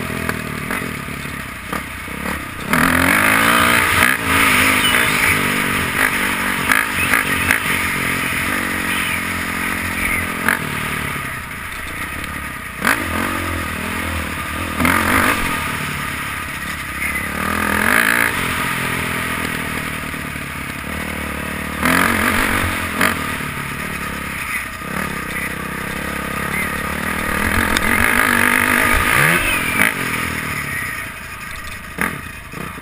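Dirt bike engine heard close up from a camera mounted on the bike, revving up and down repeatedly while riding a dirt track. Its pitch climbs and drops over and over, with a sudden louder surge about three seconds in and again at several points later. Tyres and parts clatter over the dirt at the same time.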